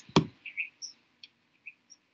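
A single sharp click just after the start, then a few faint, short high-pitched blips and ticks.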